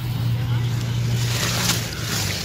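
A steady low engine hum at an unchanging pitch, with brief scraping noise near the end.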